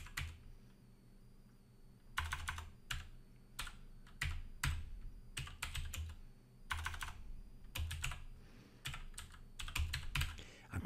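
Computer keyboard typing in short, irregular runs of keystrokes, with pauses between them. A single drawn-out spoken word comes about two seconds in.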